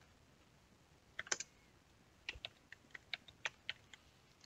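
Faint typing on a computer keyboard: two keystrokes about a second in, then a run of about eight keystrokes in the last second and a half.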